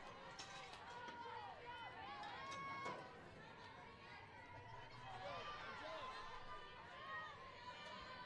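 Faint chatter of many overlapping voices and calls from the crowd and teams at a softball game.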